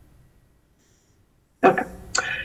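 Near silence for about a second and a half, then a voice says "Okay."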